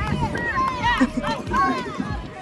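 Voices of several people talking and calling out along a parade route, overlapping one another, with footsteps of people walking.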